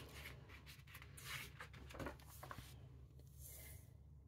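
Faint rustle and slide of a paper page in a picture book being turned, in a few soft strokes.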